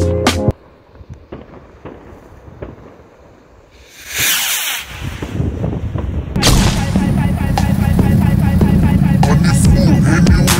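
A firework rocket launching with a loud hissing whoosh about four seconds in, after the music stops early on. Music with a steady beat comes in at about six and a half seconds.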